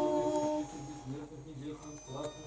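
Small unaccompanied church choir holding a sung chord of Orthodox chant that ends about half a second in, followed by quieter low voices.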